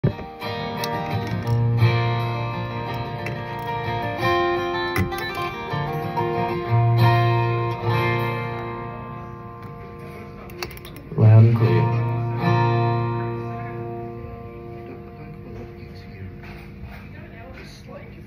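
Live band playing guitar chords over a bass line, with a few cymbal or drum strikes. A final loud chord about eleven seconds in rings out and fades slowly.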